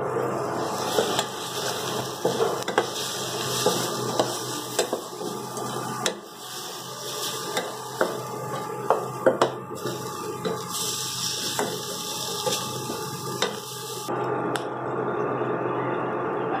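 A metal slotted spoon stirring prawns, onions and capsicum in a stainless steel kadai, with irregular clinks and scrapes of metal on the pan. The stirring stops about fourteen seconds in.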